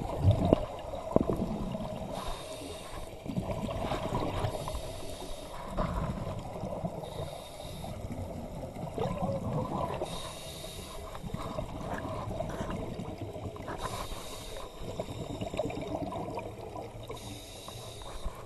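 Scuba diver breathing underwater through a regulator. A hiss comes with each inhalation, about every three seconds, and alternates with the gurgle and rumble of exhaled bubbles.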